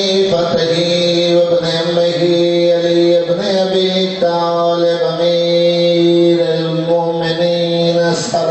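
A man's voice chanting verse into a microphone in long held notes on a nearly level pitch, phrase after phrase with short breaks between: a zakir's melodic recitation.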